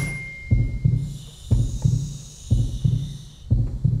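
Game-show countdown cue: a low, heartbeat-like double thump about once a second, with a faint high shimmer above it in the middle.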